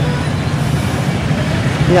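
Steady street noise from road traffic, mostly a low rumble with no distinct events.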